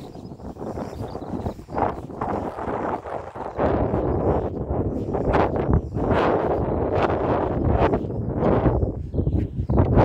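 Wind buffeting a phone's microphone outdoors, gusty and uneven, growing louder and deeper about a third of the way in.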